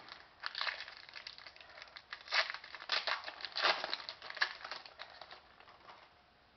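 Crinkling and tearing of a trading-card pack wrapper being opened, in irregular rustles that stop shortly before the end.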